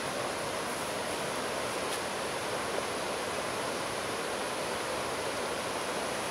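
Steady, even rushing noise of the outdoors, with no distinct events or pitch in it.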